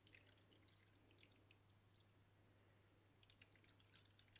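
Very faint trickle of water poured slowly from a glass measuring jug into a bowl, heard as scattered small splashes and drips.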